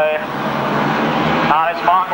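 A pack of grasstrack solo racing motorcycles at full throttle just after the start, their engines blending into one continuous noise. A voice comes back in near the end.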